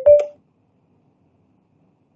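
A short electronic beep with two steady pitches, lasting about a third of a second.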